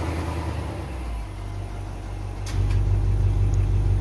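BMW M850i's 4.4-litre twin-turbo V8 idling, its low hum getting louder about two and a half seconds in.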